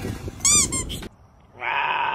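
A short, high squeak about half a second in, then, after a brief hush, a cougar gives one high-pitched cry lasting under a second.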